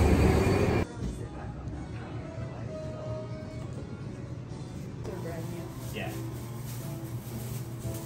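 Loud street noise on a city sidewalk for about the first second, then an abrupt change to a quieter shop interior with music playing and indistinct voices.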